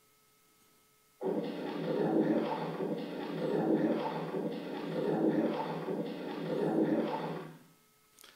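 A low-quality phone recording played back over loudspeakers: a muffled rushing noise starts suddenly about a second in, swells and fades about every second and a half, and dies away shortly before the end.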